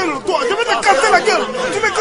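Several voices shouting and talking over one another at once, a loud commotion with no single clear speaker.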